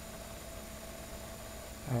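Steady low hiss and faint hum from the recording's background noise, with a man's voice starting right at the end.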